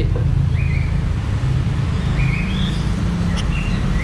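A steady low rumbling hum, with a few short high chirps scattered through it.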